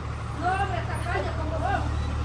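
A motor vehicle's engine running with a low, steady rumble, under faint voices from people nearby.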